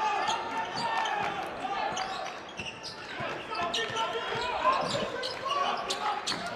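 Basketball being dribbled on a hardwood gym floor, with repeated short bounces, over the chatter and calls of the crowd and players in a large gym.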